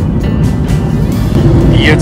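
Cabin noise of a Boeing 737-800 in flight: a steady, loud low rumble of engines and airflow.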